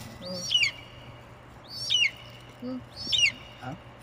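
A bird calling three times, a little over a second apart, each a quick sharp high note sweeping downward.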